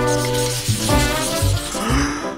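Music: a short jingle of held pitched notes over a pulsing bass line.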